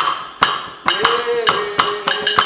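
Struck hand percussion keeping a steady beat, sharp knocks about twice a second each with a short ringing note, as the accompaniment of a local Christmas song. About a second in, a voice slides up into one long held note.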